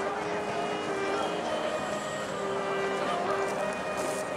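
A concert band of woodwinds and brass playing, holding sustained notes that move to new pitches every second or so.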